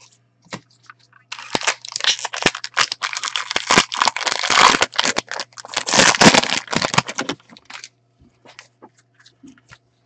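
Foil wrapper of a Topps baseball-card jumbo pack being torn open and crinkled by hand: a dense crackling rustle that starts about a second in and lasts about six seconds.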